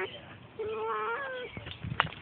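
Siamese cat meowing: the tail of one call right at the start, then one long drawn-out meow beginning about half a second in.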